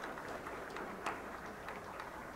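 Camera shutters clicking rapidly and irregularly, with one louder click about a second in.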